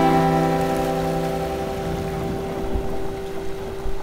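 Background music: a strummed acoustic guitar chord left ringing and slowly dying away, over a low rumble, and cut off at the very end.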